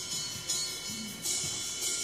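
Light cymbal strokes from a brass band's percussion, each a short soft splash repeating at an unhurried, slightly uneven pace as the piece opens.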